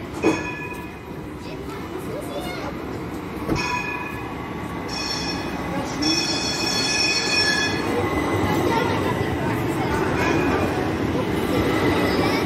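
A street tram approaches along the rails and passes close by. High-pitched ringing squeals come in short bursts early on and a longer run between about five and eight seconds in, and the running rumble grows as the tram draws level near the end. There is one sharp knock just after the start.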